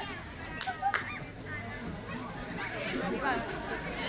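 Faint, scattered voices of players talking on the sand court, with a couple of short sharp slaps in the first second.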